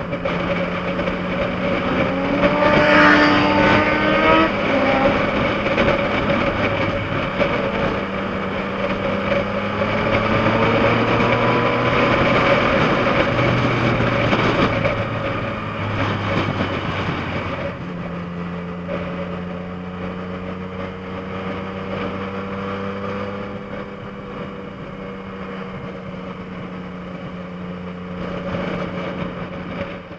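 2014 Yamaha MT-09's inline-three engine running steadily under way, under wind and road noise. About three seconds in the engine pitch briefly rises, and after about eighteen seconds the sound eases to a lower, quieter cruise.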